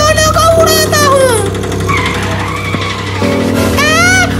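Cartoon soundtrack: background music over a steady vehicle-engine hum, with a long high squeal that rises and falls in the first second and a half and another sharp rising squeal near the end.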